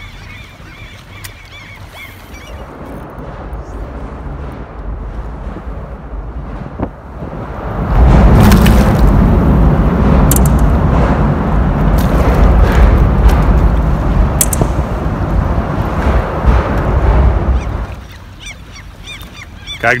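Wind buffeting the microphone on an open boat, with water lapping at the hull: a rumbling roar that becomes loud for about ten seconds in the middle and drops back near the end, with a few sharp clicks.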